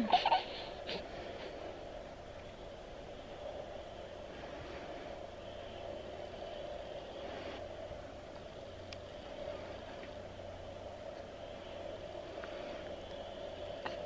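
Quiet room tone with a faint steady hum, with a brief soft sound right at the start.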